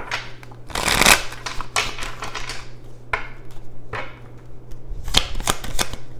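A deck of tarot cards being shuffled by hand: a long rush of shuffling about a second in, shorter shuffles after it, and a run of sharp card snaps near the end.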